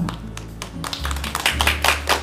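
A few people clapping in scattered claps, starting about a second in, over quiet background music.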